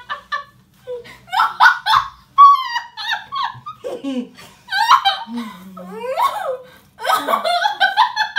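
Women laughing hard in repeated bursts, the laughs gliding up and down in pitch, while at least one tries to keep a mouthful of water in.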